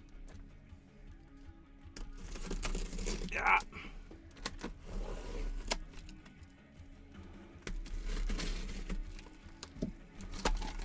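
A cardboard shipping case being handled and opened: several sharp knocks and a noisy scraping, tearing stretch a couple of seconds in, over faint background music.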